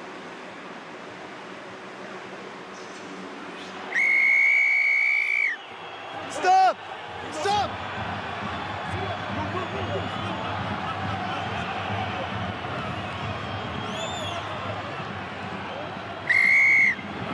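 Rugby referee's whistle: one long, loud blast about four seconds in, over stadium crowd noise. Two short shouts follow, then a hubbub of players' and crowd voices as a scuffle goes on.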